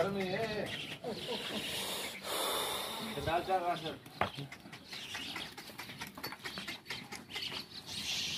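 Rajanpuri goats in a herd, with a short wavering bleat a little after three seconds in, among indistinct voices of people talking.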